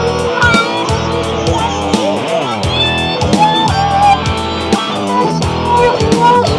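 Electric guitar lead played through a Rocktron talk box, with bent, wavering notes and vowel-like sweeps, over a steady bass line and guitar backing.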